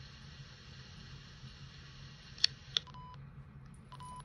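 Steady low hiss with a faint hum. About halfway in come two sharp clicks, then two short electronic beeps at the same pitch, typical of buttons pressed on a handheld electronic device.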